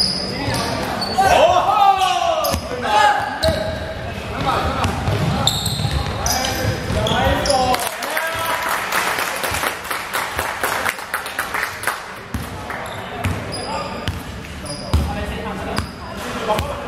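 Players shouting and calling to each other during a basketball game, with short high sneaker squeaks on the hardwood court and the ball bouncing. The sound echoes in a large gym.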